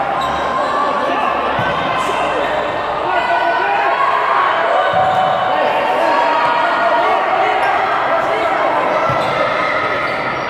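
Futsal game in an echoing sports hall: players and onlookers shouting, with a few thuds of the ball being kicked on the hard court.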